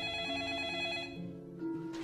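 A telephone ringing with a fast electronic warble, cutting off about a second in, over a low, steady music drone.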